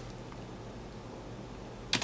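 Low steady background hum and hiss of room tone, with no keystrokes or other distinct sounds.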